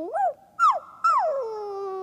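Dog whining in sliding, pitched calls: two short calls that rise and fall, then a longer one that drops and holds low.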